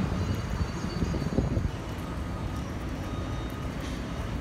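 Steady low rumble of outdoor street background noise, with no clear single event.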